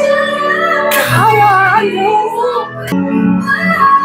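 A woman singing a slow, dramatic pop ballad over orchestral backing, her voice gliding between long held notes.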